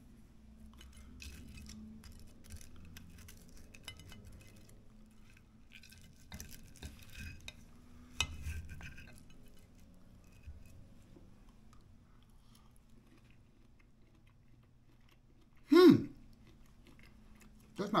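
Knife and fork cutting through a crisp-breaded pork chop on a ceramic plate: light scraping, with clicks of the cutlery on the plate over the first half. Then quieter, with a short loud voice sound near the end.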